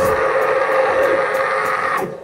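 Electric guitar feedback: one loud, sustained tone held steady in pitch after the drums and bass drop out, with faint light ticks about three to four times a second.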